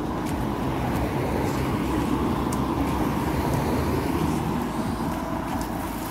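Road traffic: cars passing on a main road, a steady rumble of engines and tyres.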